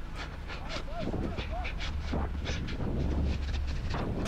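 Match audio from a player's head-mounted camera while running: a steady low wind rumble on the microphone, with several short, sharp calls about a second in.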